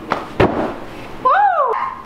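A person flipping over a couch and landing on a giant beanbag: two quick impacts in the first half second, the second louder. A whooping "woo!" follows.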